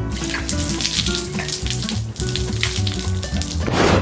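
A stream of coffee pouring and splashing down onto a person and the ground, heard as a steady spattering hiss over background music with held notes.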